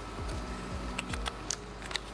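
Background music with a steady beat, over a few sharp clicks from the Konica Genba Kantoku's open back and film cartridge being handled as 35 mm film is loaded.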